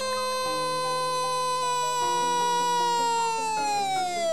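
A long drawn-out 'goal' cry held on one high note, its pitch sliding down near the end as it trails off, over background music.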